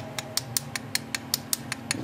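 Steady mechanical ticking, about six light clicks a second, very evenly spaced, over a faint steady hum.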